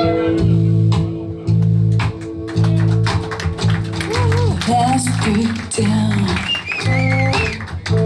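Live hard rock band playing an instrumental stretch: electric guitars, bass guitar and drums, with the bass hitting repeated low chunky notes. From about halfway through, a lead guitar line comes in with notes bent up and down and shaken with vibrato.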